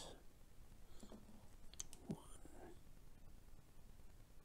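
Near silence, with a few faint ticks from fine-nosed pliers working a tiny metal chain link just before the middle.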